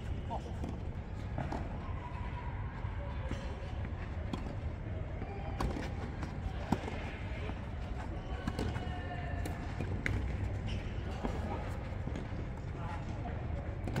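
Tennis rally on a clay court: sharp pops of racket strings hitting the ball, spaced a second or two apart, over a steady low background, with faint voices.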